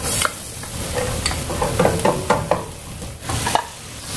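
Diced pork sizzling as it fries in oil in a frying pan, stirred with a wooden spatula that scrapes and taps against the pan several times.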